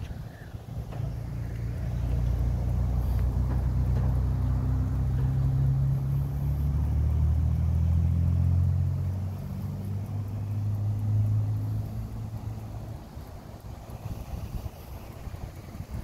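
A low engine hum builds up, is loudest through the middle, shifts down in pitch in steps, and fades away near the end, like a vehicle passing by.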